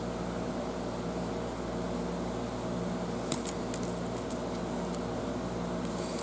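Steady room hum from a fan or air-conditioning unit running. A few faint clicks come about halfway through as the plastic fishing-rig packet is handled.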